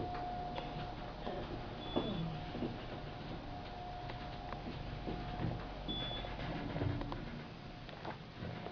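Kone elevator car running on its descent: a steady low rumble of the ride, with two short high beeps about four seconds apart as it passes floors. The rumble drops away near the end as the car stops.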